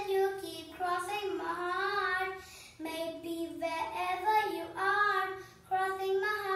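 A young girl singing solo without accompaniment, in held notes with short breaks between phrases.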